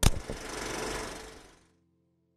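Logo sting sound effect: a sudden hit followed by a rushing noise that fades out after about a second and a half, over the fading last notes of music.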